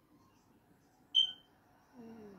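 A single short, high-pitched beep about a second in, over faint room noise.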